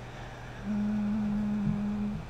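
A woman humming a steady, low, closed-mouth "mmm" for about a second and a half, starting a little way in, over a faint constant electrical or room hum.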